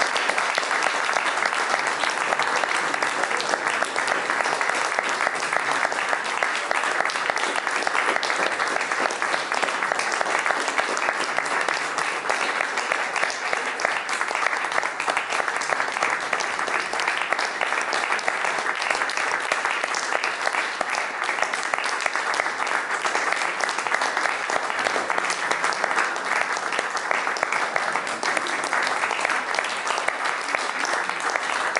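Audience applauding, a dense, steady clapping that runs without a break.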